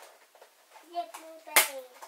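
A child's short wordless vocal sounds, with one sharp smack about one and a half seconds in, the loudest sound.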